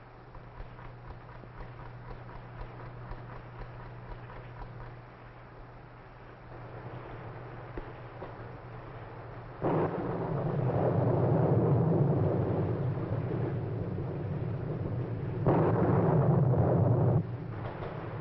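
Thunder on an old film soundtrack: a sudden loud peal about ten seconds in that swells and fades over several seconds, then a second loud clap near the end. Before it, only faint film hiss and hum.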